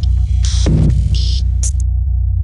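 Electronic outro sting of glitch sound effects: a loud, steady deep bass drone under short bursts of crackling digital static, with a falling sweep about half a second in and a sharp click near the end.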